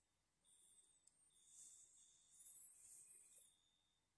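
Near silence: a pause in the speech with only a very faint high electronic whine.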